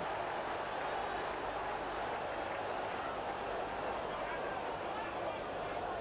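Football stadium crowd noise: a steady, even roar of many voices from packed terraces.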